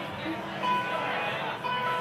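Guitar notes held and ringing out over a live venue's PA, with a low hubbub of crowd chatter under them.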